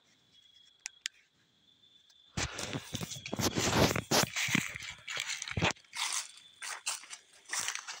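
Footsteps crunching through dry fallen leaves and brush, about two steps a second, starting about two seconds in after a near-silent pause.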